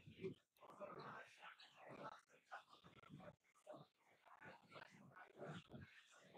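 Near silence with faint, indistinct murmuring voices of people talking quietly in the background.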